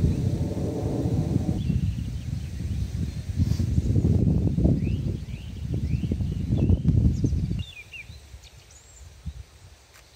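Wind gusting on the microphone, with small birds chirping now and then. The wind noise drops away about three-quarters of the way through, leaving a quiet outdoor background.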